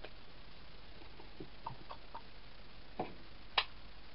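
Handling sounds of cardstock and craft tools: a few faint ticks and taps, then a sharper click about three and a half seconds in as a paper punch is picked up.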